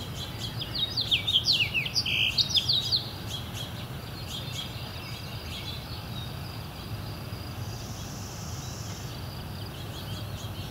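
A songbird sings a quick run of loud, sweeping whistled notes for about two seconds near the start, then fainter birdsong goes on over a steady low rumble.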